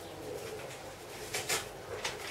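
A bird cooing faintly, with a short rustle about one and a half seconds in.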